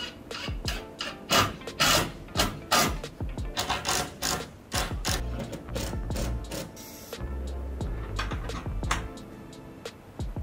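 Makita cordless impact driver driving screws into wood in short bursts of whirring, rattling hammering, over background music.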